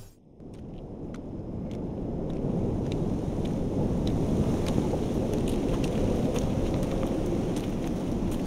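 A low rumble swells up from near silence over the first couple of seconds and then holds steady, with scattered faint ticks and crackles on top.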